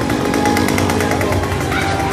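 A small engine running with a fast, even rattle.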